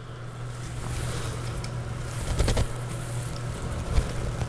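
Steady low hum with low rumbling handling noise, and a few light clicks about two and a half seconds in and again at the end, as the plastic dropper-post remote lever and its clamp are handled on the handlebar.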